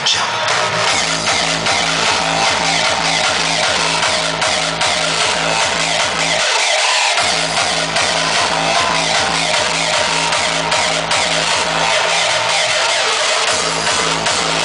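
Hardstyle dance music from a live DJ set, played loud through a club sound system with a steady, fast, pounding kick drum. The kick and bass cut out for about half a second a little past six seconds in, then come back.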